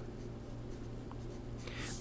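A wooden pencil writing on paper, faint and light, as short symbols are written.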